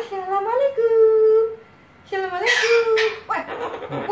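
Sulphur-crested cockatoo vocalising in long, drawn-out, whining voice-like calls with held pitches and glides, two stretches with a short pause about halfway.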